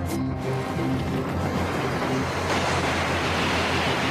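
Background music with a rushing whoosh sound effect that swells in about halfway through.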